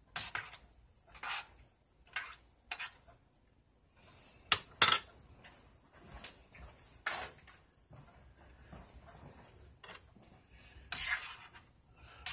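A metal spoon clinking and scraping against a stainless steel saucepan while boiling rotini pasta is stirred, with a metal spoon set down on the countertop in between. The clinks come singly at irregular intervals, the loudest a quick pair about five seconds in.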